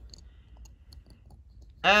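A few faint, light clicks from fingers handling a small die-cast toy car as it is turned over.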